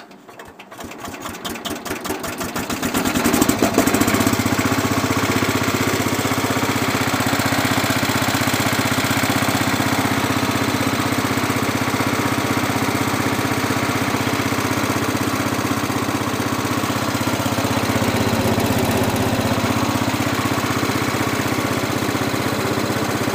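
Cub Cadet 107's Kohler K241 10 hp single-cylinder engine starting: it fires and speeds up over the first few seconds, its beats coming faster and faster, then runs steadily.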